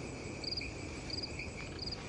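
Crickets chirping at night: short trilled chirps about every two-thirds of a second, three of them here, over a steady high hum.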